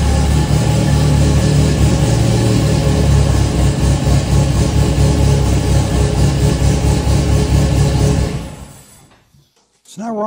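An MGB GT's modified four-cylinder engine with a big cam, running loud and steady as the car rolls slowly forward. The sound dies away about eight and a half seconds in.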